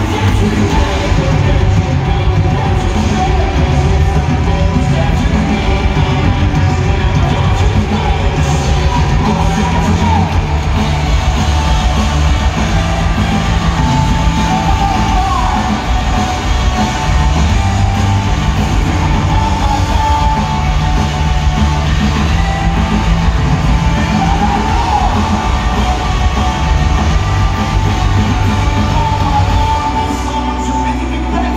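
Pop-punk band playing live at full volume, with drums, distorted electric guitar and bass, heard from the stands of a stadium.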